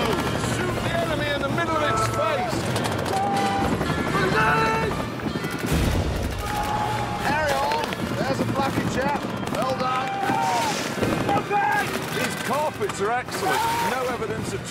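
Music with bursts of machine-gun fire and shouting voices, several sharp shots standing out in the second half.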